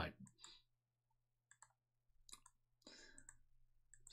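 Near silence: faint room tone with a low hum and a few faint clicks.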